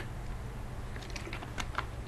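A few light computer-key clicks, several in quick succession about a second in, over a low steady hum.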